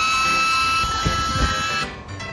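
Handheld 3D scanner running as it is swept over the gap: a steady high electronic whine with a hiss, rising slightly in pitch, that cuts off abruptly near the end. A few low thuds come around the middle.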